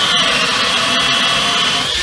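Electric drill with a Forstner bit boring into a basswood guitar body to hog out wood, the motor running steadily under load with a high whine.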